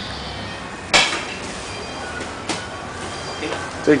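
Two sharp slaps about a second and a half apart, the first much the louder, as bodies hit a vinyl-covered training mat during a takedown. A man says "thank you" at the very end.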